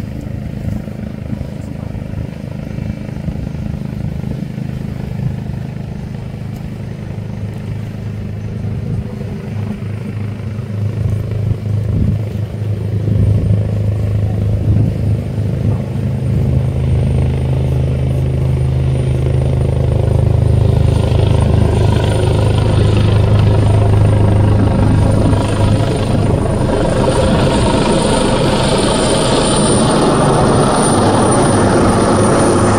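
A steady low engine drone that grows gradually louder, as if drawing nearer, with a high thin whine coming in over the second half.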